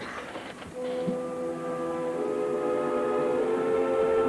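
Orchestra playing sustained brass chords for the ballet, starting about a second in and swelling louder.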